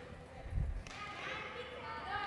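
A single dull thump on the hardwood gym floor about half a second in, with faint children's voices in the large hall from about a second on.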